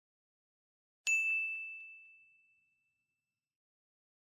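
A single bell-like ding, struck once about a second in and ringing out as one high tone that fades over about two seconds, with a few faint ticks just after the strike.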